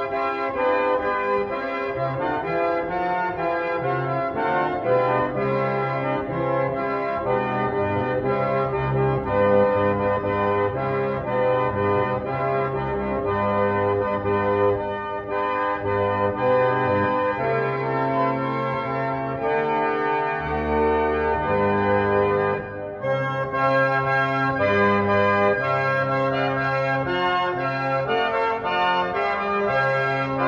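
A 150-year-old foot-pumped reed organ playing a slow Baroque psalm setting: sustained chords over a moving bass line, with short breaks between phrases about halfway through and again a little later.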